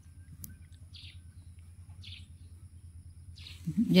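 Faint bird chirps, three or four short ones about a second apart, over a steady low hum.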